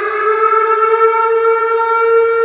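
A single horn-like tone held steady at one pitch, rich in overtones and slowly growing louder.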